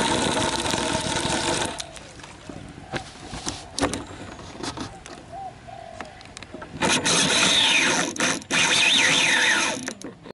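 Fishing rod and reel in use during a cast, heard from a camera fixed to the rod. A loud rush of wind and handling noise comes as the rod swings, then quieter clicks. About seven seconds in, a second loud stretch of whirring and scraping lasts about three seconds.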